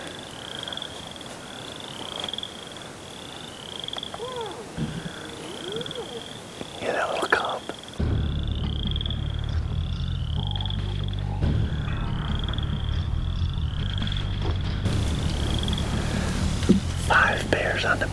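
A high, thin chirp repeats about once a second throughout over quiet outdoor ambience with a faint rustle. About eight seconds in, a low, steady drone of background music comes in abruptly and carries on under the chirping.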